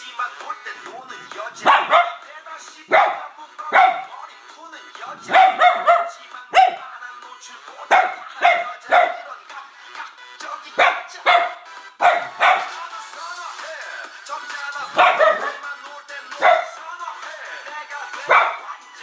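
Small dog barking repeatedly at pop music playing from a laptop: about twenty short, sharp barks, often in quick pairs or threes, with a few gaps of a second or two, as the dog objects to the song.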